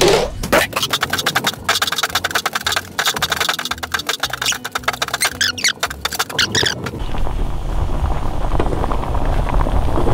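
Background music with a fast beat for about seven seconds. Then a pot of rice boiling on the stove takes over, a steady bubbling hiss with a low rumble.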